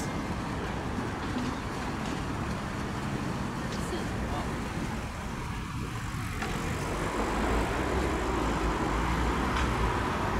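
Busy city street ambience: road traffic passing with people's voices in the background, and a low vehicle rumble building in the second half.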